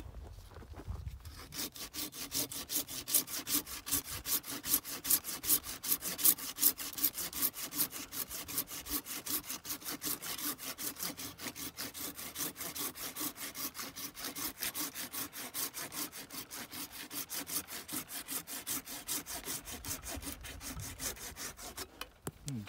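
Hand pruning saw cutting through a peach tree branch in steady, rapid back-and-forth strokes that start about a second and a half in: the cleanup cut that takes the branch stub off cleanly after the undercut.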